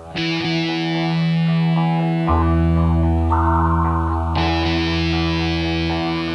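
Rock band intro: distorted electric guitar holding sustained chords that change about every two seconds, with bass guitar coming in about two seconds in.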